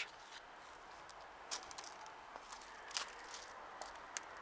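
Faint outdoor background with a few soft, scattered crunches of footsteps on gravel.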